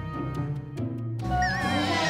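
Background music with a steady, pulsing bass beat. About a second and a half in, a high, warbling sound effect comes in over it, wavering up and down in pitch.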